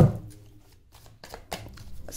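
A tarot deck being shuffled by hand: a sharp card snap at the start that quickly dies away, then a few light card clicks about one and a half seconds in.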